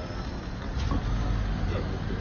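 Street traffic: a steady low rumble of road vehicles on a wet street, swelling slightly after the first half-second.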